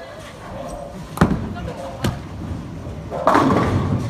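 Bowling ball hitting the pins, a loud clatter starting about three seconds in and lasting most of a second, after two sharp knocks in the alley.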